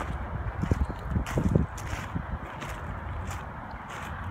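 Footsteps crunching on landscape gravel, a short crunch every half-second or so, with a few louder low thumps about a second in.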